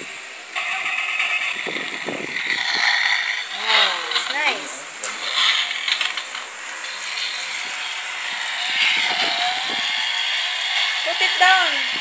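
Battery-powered toy sports car's built-in engine sound effect, a revving car engine played through its small speaker, starting about half a second in and running steadily for several seconds. It is set off by pressing the toy's 'gas' button, which also lights its headlights.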